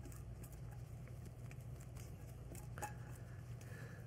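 Faint patter and light clicks of cooked rice being scraped out of a stainless saucepan with a silicone spatula onto a silicone-mat-lined sheet pan, with one slightly sharper click nearly three seconds in.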